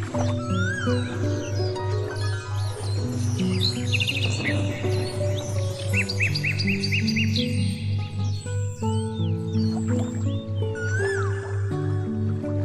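Instrumental background music with held notes over a steady pulsing low note, mixed with bird chirps and trills.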